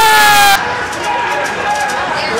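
A spectator's loud, drawn-out shout at an ice hockey game. It cuts off about half a second in and is followed by more calling voices.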